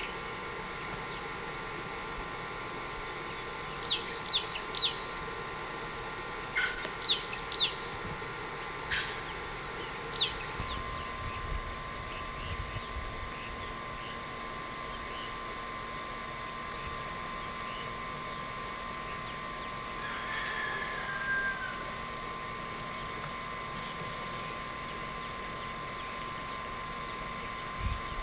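Birds calling outdoors: short, sharp chirps in small groups through the first ten seconds, then one longer falling call about twenty seconds in, over a steady low hum.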